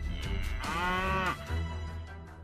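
A single drawn-out call from a large animal, under a second long, its pitch arching slightly up and then down. It lies over background music.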